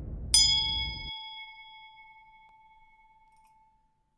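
A single bright chime sound effect struck as the subscribe animation's notification bell is clicked, ringing out and fading away over about three seconds. A low rumble from the intro dies away underneath within the first second.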